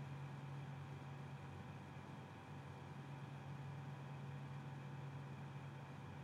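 Quiet room tone: a faint steady low hum with light hiss, and no distinct sound event.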